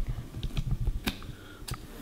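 A few light, sharp clicks, some in quick pairs about a second and 1.7 seconds in, from trimming a ventriloquist dummy's synthetic hair with a small hand tool.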